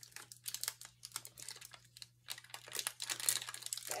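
Foil pouch of Model Magic modelling compound crinkling and crackling in the hands as it is worked open, in quick irregular bursts.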